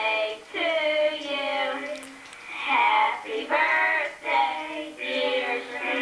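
High children's voices singing in drawn-out notes, several phrases with short breaks between them, sounding thin as they play back through a television's speaker.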